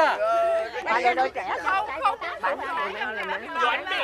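Several people chatting in Vietnamese and talking over one another.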